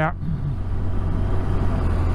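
Touring motorcycle under way on a wet road: a steady low engine drone with road and wind noise, picked up by a helmet-mounted microphone.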